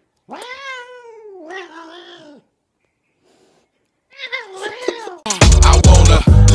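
A cat's long meow that rises and then slowly falls over about two seconds, followed after a pause by a second, shorter call. Loud hip-hop music with heavy bass comes in near the end.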